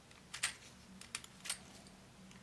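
Small sharp metal clicks and scrapes of a precision screwdriver tip working inside a small lens barrel: a quick cluster about half a second in, then a few single clicks about one and one and a half seconds in.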